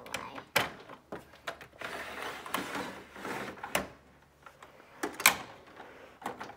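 Plastic dollhouse pieces and a doll being handled: a few sharp knocks, the loudest about half a second in and near the end, with soft rustling in between.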